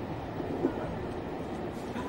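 Steady rumble of a railway carriage in motion, heard from inside the passenger compartment.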